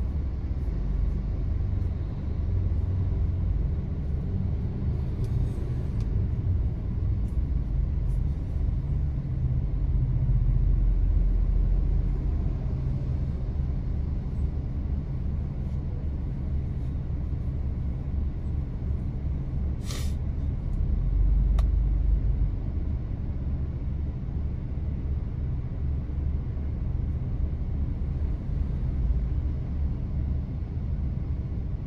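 Low, steady rumble heard from inside a stopped car: its engine idling and traffic crossing the junction in front, swelling slightly twice as vehicles pass. A single sharp click about two-thirds of the way through.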